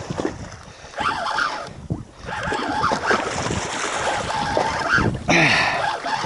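Wind buffeting the microphone and sea water lapping against a boat's hull, with handling noise from a spinning rod and reel as a fish is fought and reeled up.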